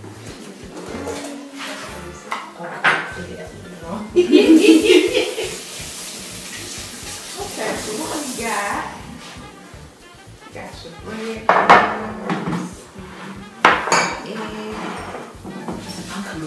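Kitchenware clattering on a tiled counter as bowls and utensils are set down and moved about. There are several sharp clinks, and a louder, noisier burst lasting about a second a few seconds in.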